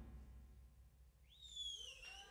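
A drum kit's ring dies away into near silence during a sudden stop in the music. About a second and a half in, a single high whistle sweeps up, then holds and slowly sinks in pitch.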